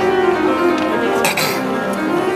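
Grand piano played live in a fast boogie-woogie, dense notes at a steady level, with a brief bright burst of sound over the top about a second and a quarter in.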